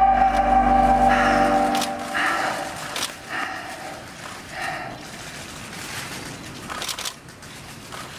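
A male singer's held final note with musical accompaniment ends a musical number about two seconds in. Faint scattered clicks and soft noises follow.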